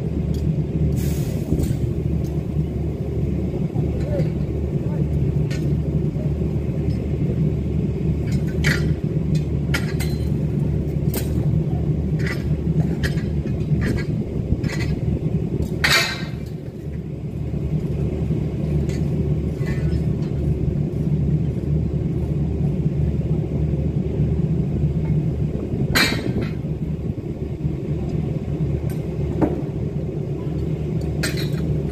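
Steady low machinery rumble on a construction site, with scattered sharp metal clanks and clinks of steel scaffold tubes and couplers being handled during dismantling; the loudest clanks come around the middle and near the end.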